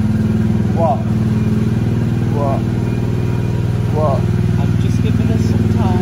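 Small petrol engine of an Autopia ride car running steadily with an even, low drone.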